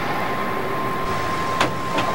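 Steady outdoor noise on a car lot, with a thin steady high tone over it and a single click about a second and a half in.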